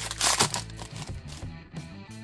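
Foil trading-card pack wrapper crinkling as it is torn open, in the first half second, then background music.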